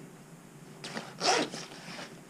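Zipper on a puffer vest being pulled, two short rasps about a second in.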